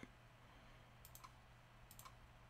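Near silence: room tone with a few faint clicks, a small cluster about a second in and another near the end.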